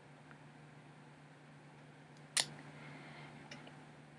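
Quiet room tone with a steady low hum, broken by one sharp click a little past halfway and a much fainter click near the end.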